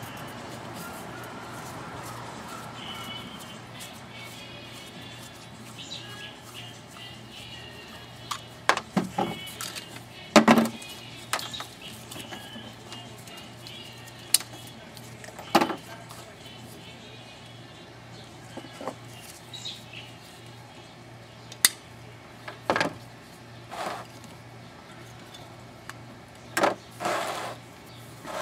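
Scattered sharp knocks and clanks, about a dozen, from work on a refrigerator being stripped for scrap metal. They sit over a steady low hum and faint background music.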